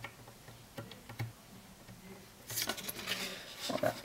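Paper rustling and scraping as a folded edge is pressed and rubbed down with a plastic tool, starting about two and a half seconds in, after a few faint light clicks.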